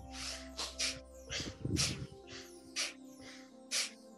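Forceful rhythmic breathing in and out through the nose in bhastrika (bellows breath) yoga breathing, with short sharp puffs of air about once a second. Soft background music plays underneath.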